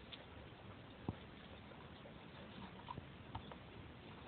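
A dog picking berries off a bush with its mouth and chewing them: faint scattered mouth clicks and rustling of leaves, with a sharper click about a second in.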